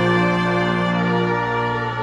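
A brass choir of tubas, euphoniums and trumpets holding a sustained chord, with the low brass strongest.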